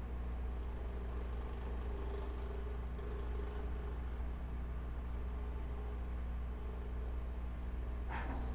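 Steady low hum and faint hiss of an open microphone with no one speaking: room and equipment background noise.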